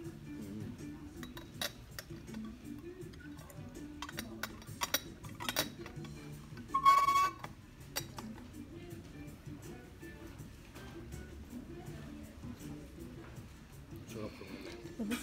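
China cups, saucers and cutlery clinking at a tea table, over background music and low voices. The loudest sound is a brief ringing about seven seconds in.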